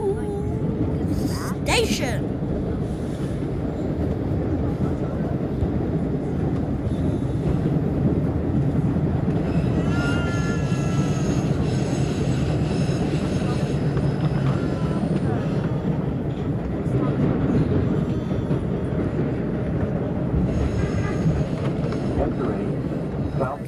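MBTA Red Line subway train running through a tunnel, heard from inside the car: a steady low rumble of wheels on rail. A faint rising whine comes in about ten seconds in.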